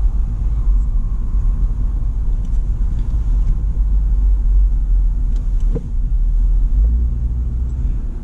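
Car driving slowly, heard from inside the cabin: a steady low rumble of engine and road noise.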